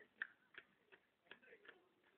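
Faint, irregular clicks or taps, about five in two seconds, the first one the sharpest.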